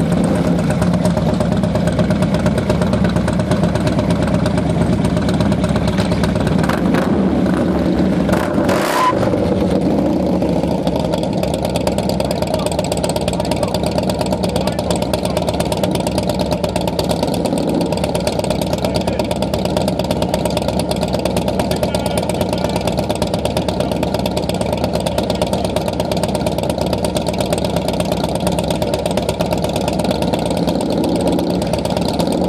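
Harley-Davidson V-twin motorcycle engine running close to the microphone, steady throughout, a little brighter for the first ten seconds and then settling into an even idle.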